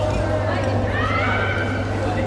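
Chatter in a large indoor badminton hall, with one high squeal a little under a second in that rises and then holds for about a second.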